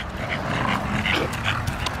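A bully-breed dog panting, with a few short, soft whines.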